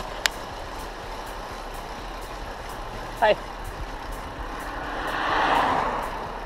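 A motor vehicle passing on the road, its tyre and engine noise swelling to its loudest about five and a half seconds in and then fading, over steady wind and riding noise on a bike-mounted camera.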